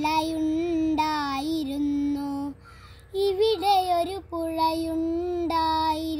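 A young boy singing a Malayalam poem (padyam) solo, in long held, wavering notes, with a short breath pause about halfway through.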